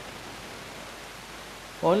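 Steady, even background hiss during a pause in speech. A man's voice starts again near the end.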